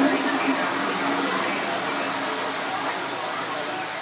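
Steady hubbub of a busy indoor play hall: many indistinct voices blended into a continuous hiss, with no single voice standing out.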